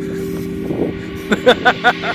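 A man laughing in a few short bursts near the end, over a steady sustained low chord of background music.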